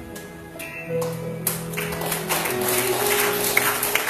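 Live band music, acoustic guitar with keyboard, playing soft held chords. About a second and a half in, a spread of small clicks and taps comes in over the music.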